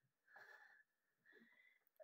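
Faint, slightly wheezy breathing of a woman straining to hold a back bend: two breaths about a second apart.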